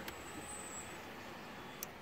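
Faint, steady background noise inside a car cabin, with one small click near the end.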